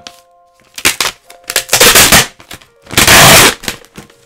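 A postal envelope being torn open by hand: a few sharp ripping tears with crackling paper between, the loudest tear about three seconds in.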